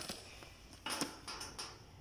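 Faint handling noise: a few soft clicks and rustles, the clearest about a second in.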